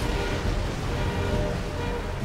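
Music over a steady, dense low rumbling noise: the sound effect of a large animated explosion.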